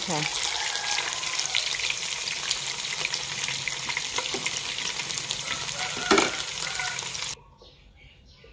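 Banana-blossom and minced-pork fritters frying in hot oil in a pan: a steady crackling sizzle, with a single sharp knock about six seconds in. The frying cuts off suddenly near the end.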